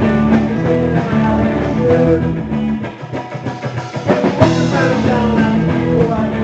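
Live rock band playing, with electric guitar and drum kit. The music briefly thins out in the middle, then comes back in with a sharp hit about four and a half seconds in.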